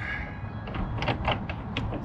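A series of short metallic clicks and scrapes as a brass propane fill adapter is screwed into a camper van's fill port, over a low steady background hum.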